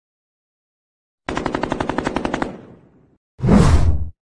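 Intro sound effect of machine-gun fire: a rapid burst of about eleven shots a second for just over a second, trailing off, followed near the end by a single loud hit.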